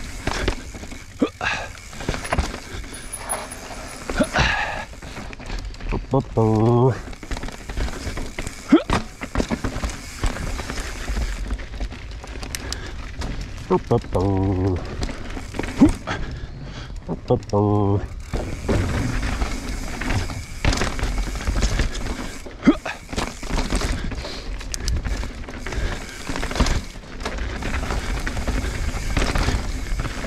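Mountain bike descending a rocky dirt trail, heard from the bike-mounted camera: steady tyre and wind noise with frequent knocks, clatter and thuds as the wheels and suspension hit rocks, roots and a wooden bridge. Three short pitched buzzes stand out, about a third and halfway through.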